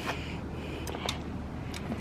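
Boiled crawfish being eaten: a few short clicks and snaps of shells cracking and faint sucking sounds, over a steady low hum.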